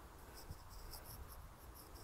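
Faint scratchy rustling of a hand-held phone being moved and handled, over a low steady rumble.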